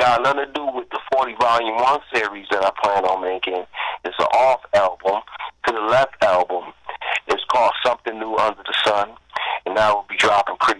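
Speech only: a man talking steadily over a telephone line, his voice thin and cut off in the highs.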